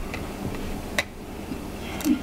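A single light click about a second in, from a small screwdriver working the SSD's tiny Torx screw, over a low steady background hum.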